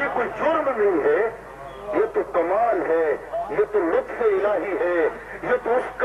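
Only speech: a man preaching into a microphone, his voice rising and falling in long, swelling phrases.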